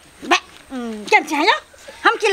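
A person's voice in a few short vocal sounds that slide up and down in pitch, with no clear words.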